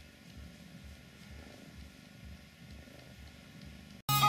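Domestic cat purring softly in a steady rhythm of low pulses about twice a second, while it suckles on a woollen sweater: the nursing purr of kittenhood carried into adult life.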